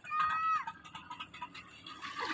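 A single high-pitched call from a voice, held for about half a second and then falling away in pitch. Faint background noise follows.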